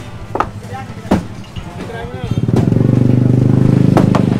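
A motorcycle engine running close by, growing loud about two seconds in with a rapid, even pulse. People talk in the background before it.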